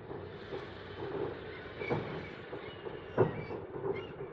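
Distant fireworks shells bursting: two booms, about two and three seconds in, the second the louder, over steady background noise.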